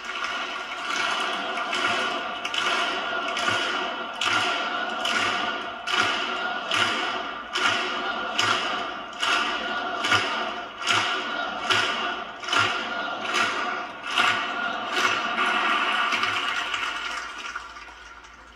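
Large audience applauding in rhythmic unison, the claps landing together about four times every three seconds. The applause dies away near the end.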